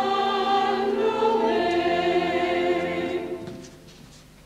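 Operetta chorus of mixed voices singing held notes. The singing fades away about three and a half seconds in.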